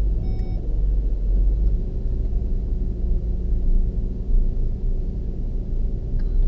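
Inside the cabin of a Land Rover Discovery 3 driving on beach sand: a steady low rumble of engine and tyres with a steady hum. A short high beep sounds about a third of a second in.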